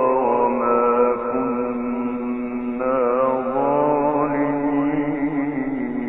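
A male Quran reciter's voice in tajweed-style recitation, drawing out the word 'dhikra' into one long melismatic note. The pitch wavers and steps up and down before fading near the end. It is an old recording with the high frequencies cut off.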